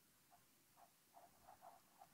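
Near silence, with a run of faint soft dabs and scrapes of a flat paintbrush working acrylic paint on a canvas, quickening in the second half.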